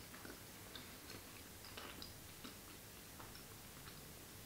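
A person chewing a mouthful of soft brie-style cheese: faint, irregular small clicks and smacks of the mouth.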